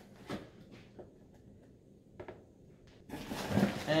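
A cardboard box being opened by hand: a few faint clicks and scrapes, then a rustle of cardboard and packing near the end.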